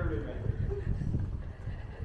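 Footsteps on paving stones, a run of irregular low thumps, with a passerby's brief indistinct voice about the start.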